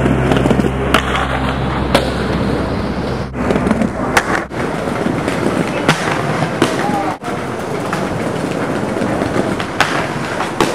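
Skate wheels rolling hard over stone pavement and ledges, with a rough continuous grind and sharp clacks of landings and impacts every second or two, and brief silences where the wheels leave the ground.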